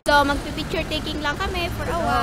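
A woman talking close to the microphone, with a steady hum of road traffic behind her.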